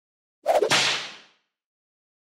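A single whoosh transition sound effect: it starts suddenly about half a second in and dies away within about a second.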